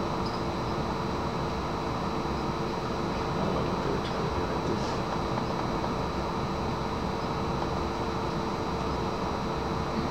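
Steady room tone of fan noise with a constant low hum and a faint high whine, with a few faint ticks.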